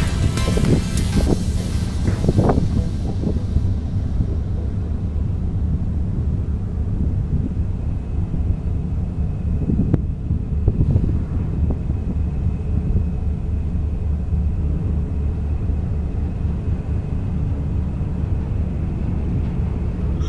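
Steady low drone of a fishing vessel's engine with wind on the microphone; music fades out in the first few seconds.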